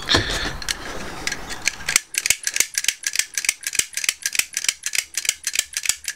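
A lock pick worked fast against the pins of a euro-profile pin-tumbler cylinder held under a tension wrench. It starts with a scratchy scraping, and from about two seconds in becomes a rapid run of sharp metallic clicks, about eight a second. The cylinder, fitted with a home-made spool pin, still gives way to the pick.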